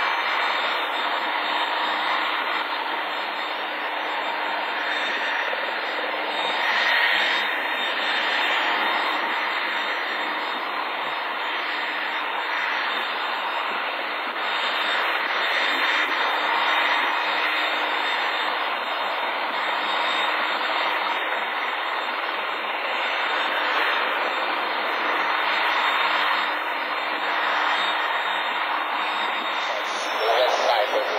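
Aircraft engine noise: a steady rush that swells and eases slowly over several seconds.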